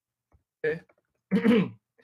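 A man clears his throat once, briefly, and about a second later says "okay".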